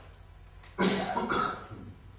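A person coughing: a sudden loud burst a little under a second in, lasting under a second.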